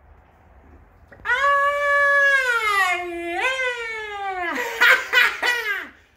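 A man lets out one long, high, drawn-out vocal cry that slides down in pitch, then breaks into short bursts of laughter near the end.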